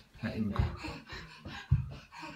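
A toddler climbing carpeted stairs on hands and feet, with two soft low thumps, one about half a second in and one near the end, amid breathy voice sounds.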